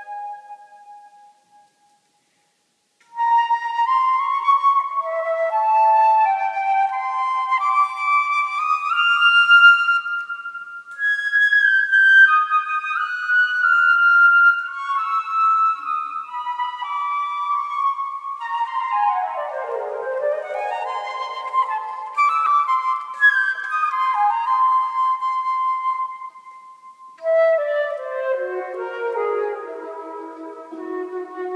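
Solo concert flute playing an étude, each note ringing on in the long echo of a stone church. A held note dies away, and after a short break the flute resumes with climbing phrases, a quick downward run about two-thirds of the way through, and lower notes near the end.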